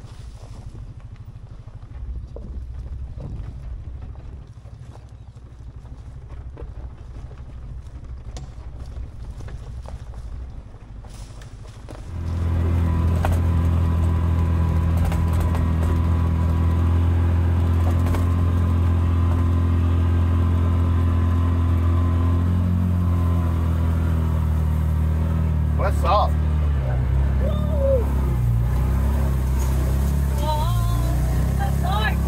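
BigHorn 550 side-by-side UTV running: low and quiet at first with scattered knocks from the trail, then about twelve seconds in it suddenly becomes much louder and steady, easing off a little near the end. A brief high, voice-like sound comes in around twenty-six seconds.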